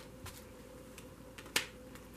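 A single sharp snap of a tarot card about one and a half seconds in, as a card is drawn from the deck and laid on the spread, with a couple of faint card ticks before it over quiet room tone.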